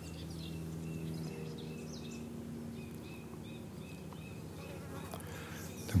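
Steady low buzzing of a flying insect, with a faint chirp repeating about three times a second.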